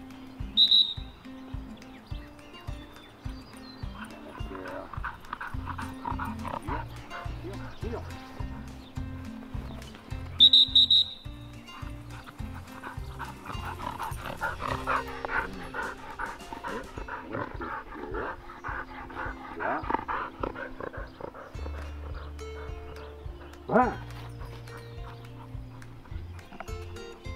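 Background music with a steady beat, and two short, high whistle blasts: one about a second in and one about ten seconds in.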